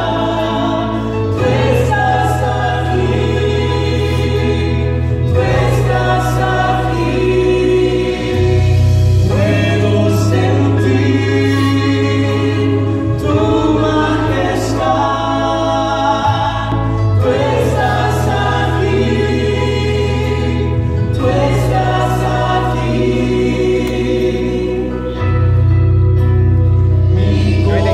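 Spanish-language worship song sung by a man and a woman, with instrumental accompaniment under a deep sustained bass that moves to a new note about every four seconds.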